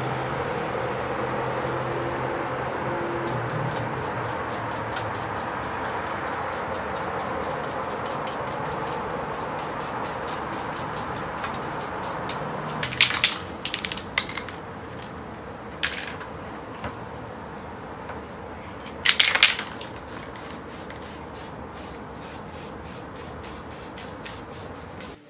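A stiff scrub brush scrubbing dried coffee grounds off stained deer antlers: a steady, fast scratchy scrubbing, then, after a drop in level, a few short sharp strokes and one longer stroke a few seconds later.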